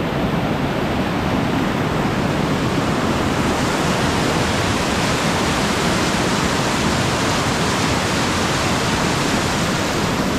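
Fast whitewater stream rushing in steady, loud rapids, its hiss growing a little brighter about three seconds in.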